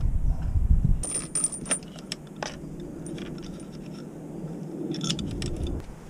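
Light metallic clinking and jingling of a bicycle bottom bracket cup and its metal spacers being handled and fitted into the frame's bottom-bracket shell, loudest in a cluster of clicks a second or so in, with a few more near the end. A low rumble fills the first second.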